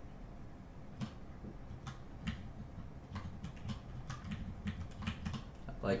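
Computer keyboard keys clicking in scattered, irregular keystrokes, coming more often from about two seconds in.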